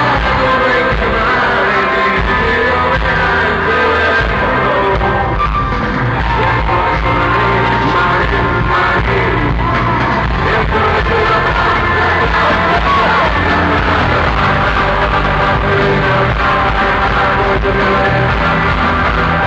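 Live rock band playing loud on electric guitar, bass and drums with singing, heard from among the audience in an arena.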